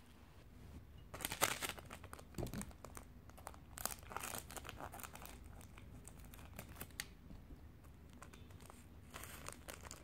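Small plastic seasoning sachet crinkling as it is handled and snipped open with kitchen scissors: quiet, scattered crinkles and clicks.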